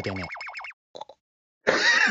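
A comic warbling sound from the anime's soundtrack: one held pitch that wobbles rapidly up and down, about seven times a second, dying away within the first second. Near the end a sudden loud burst of noise starts.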